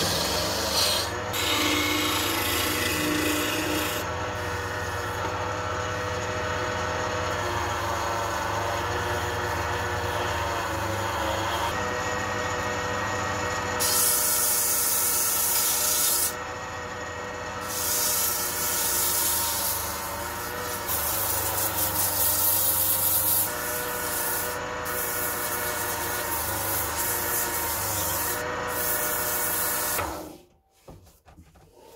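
Clarke wood lathe running with a steady motor hum while sandpaper is held against the spinning turned wooden mallet, a continuous rubbing, rasping sanding sound.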